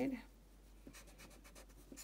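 Yellow wooden graphite pencil sketching on drawing paper: a faint run of quick, irregular short strokes.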